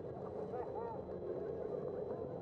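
Steady street traffic and road noise heard from a moving bicycle, with a few brief high chirp-like squeaks about half a second in.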